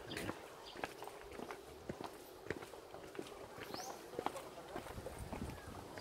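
Footsteps of people walking in shoes on a concrete path: faint, short steps, about two a second.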